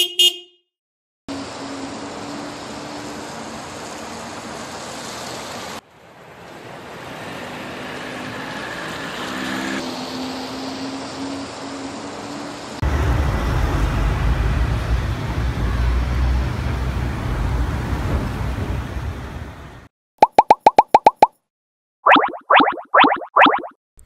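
City street traffic around a yellow taxi: a steady traffic hum with a few held tones like distant horns, then from about 13 s a louder low vehicle engine rumble that stops near 20 s. Right after it come a quick run of about eight pops and a few short bright sound-effect blips.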